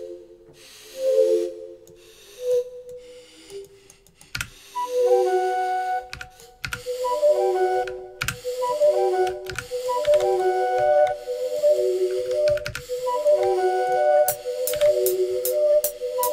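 Breathy, pipe-like synth patch ('Breathing Swing Pipes' in Omnisphere) being auditioned: a few short note phrases first, then from about four seconds in a repeating multi-note melody loop. Sharp computer mouse and keyboard clicks sound over it.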